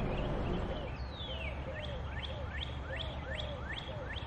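A songbird singing outdoors: one long down-slurred whistle about a second in, then a quick run of short rising notes, about three a second, over a low steady rumble of outdoor background noise.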